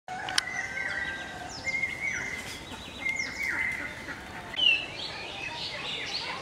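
Several wild birds calling over one another with repeated whistled and chirping notes, and a sharp high call near the end that is the loudest. A single click just after the start.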